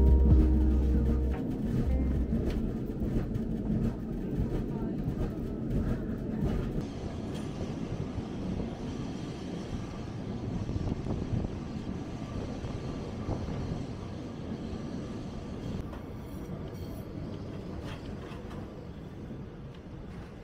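Rumble and rattle of an old wooden tram running on its rails, heard from inside the car, with scattered clicks and knocks. Music dies away in the first second or so, and the tram noise slowly fades lower through the rest.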